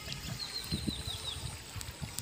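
A bird calling a quick run of about eight short, high, falling notes, over the faint rush of a shallow stream.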